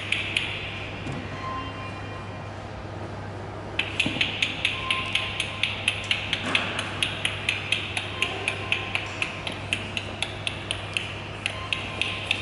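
A person making rapid, sharp clicks to echolocate, about four to five a second. A short run stops about half a second in, and after a pause of about three seconds a long, steady run of clicks follows.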